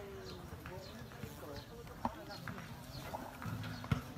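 Indistinct voices of people talking outdoors, with short high chirps repeating a few times a second and a few sharp knocks, the loudest just before the end.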